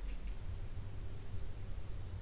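Quiet room tone with a low steady hum, and faint soft sounds of a fine paintbrush dabbing gouache onto watercolour paper.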